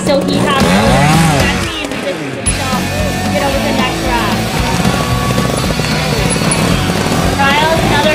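Background music with vocals cuts off abruptly about two and a half seconds in, giving way to a trials motorcycle engine running and revving as the bike climbs obstacles. Voices come in faintly near the end.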